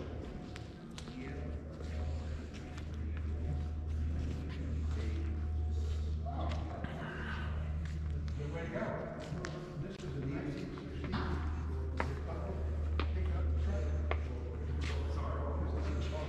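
Steady low hum of big overhead fans in a large hangar, with indistinct voices in the background and scattered footsteps and clicks.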